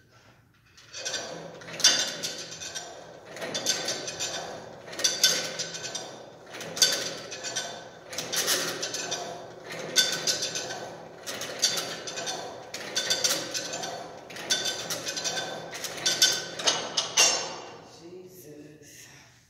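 Cable-pulley machine working through repeated pulls: the weight stack lifting and clanking back down with the cable running over its pulleys, about eleven strokes, one roughly every second and a half.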